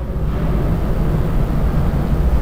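A steady low rumble with no clear pitch, fairly loud, carrying on without a break.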